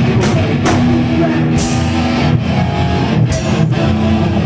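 Hardcore punk band playing live and loud: distorted electric guitars and bass over a drum kit, with several cymbal crashes and a held guitar chord midway.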